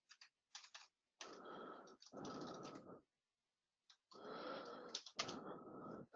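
Faint typing on a computer keyboard, coming in several short bursts with pauses between.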